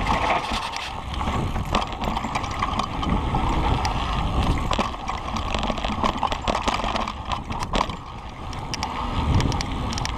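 Kona Process 134 mountain bike rolling along a dirt singletrack trail: a steady rush of tyre and trail noise, with frequent small clicks and rattles from the bike as it goes over rough ground.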